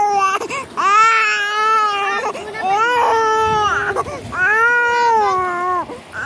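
Infant crying: a run of about four long, high-pitched cries, each a second or more long, with short gasps for breath between them.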